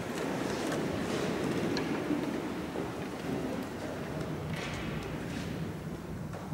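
A church congregation getting to its feet from the pews: a swell of shuffling feet, rustling clothes and creaks that is loudest in the first couple of seconds and eases off.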